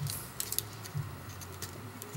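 Faint handling noises of a nail-polish-strip packet, a few light clicks and crinkles, over a low steady hum.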